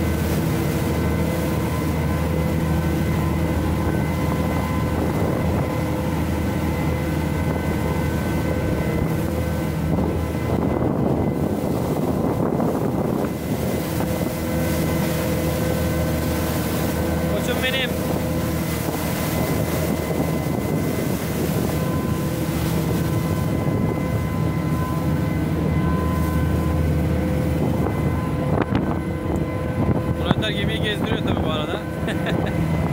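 Steady drone of a small Ro-Ro vessel's twin 540 hp Yuchai diesel engines running under way, with water rushing along the hull and wind on the microphone.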